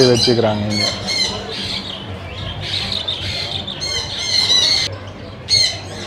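A roomful of caged parrots, budgies and lovebirds among them, squawking and chattering in many overlapping, high-pitched calls, over a steady low hum.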